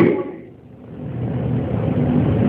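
A man's speaking voice trails off, leaving a pause filled only by a low background rumble that slowly grows louder.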